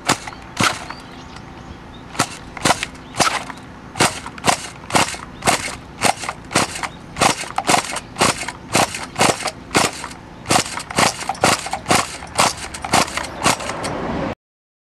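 Recoil pull-starter of a nitro (glow) RC car engine yanked over and over, about two short sharp pulls a second, with a brief pause after the second. The engine turns over without catching: a glow engine that won't start.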